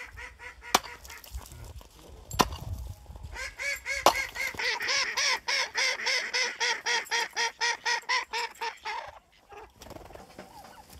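Domestic ducks quacking in a fast run of about five calls a second, starting about three seconds in and stopping about a second before the end. A few faint quacks and three sharp knocks come first.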